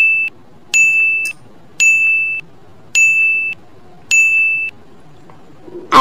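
Countdown-timer sound effect: a steady, high electronic beep repeated about once a second, five beeps in all, stopping a little over a second before the end.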